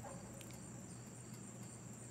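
Faint, steady high-pitched chirring of crickets, an unbroken insect chorus.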